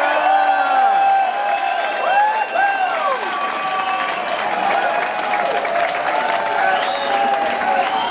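Concert audience applauding and cheering, with many voices calling out in glides that rise and fall in pitch over the steady clapping.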